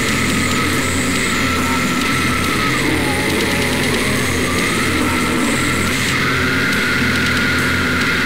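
Slamming brutal death metal: a dense, unbroken wall of heavily distorted low guitar with a held high tone over it.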